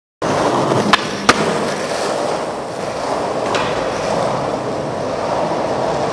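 Skateboard wheels rolling steadily over concrete. Two sharp clacks come about a second in and another around three and a half seconds.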